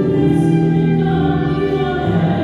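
Church choir singing a slow hymn in long held notes.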